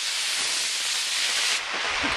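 Solid-fuel model rocket motor burning as the rocket climbs away: a steady rushing hiss that fades near the end.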